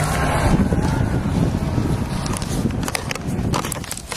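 Wind rumbling on a handheld camera's microphone, with handling noise as the camera is carried. A few sharp clicks come in the second half.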